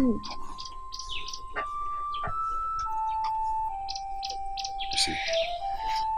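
Slow background music of held single notes that step up and down in pitch, with many short high bird chirps over it.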